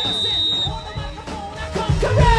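A pop-rock song with singing plays, and a single sharp blast of a referee's whistle sounds during the first half second, lasting under a second.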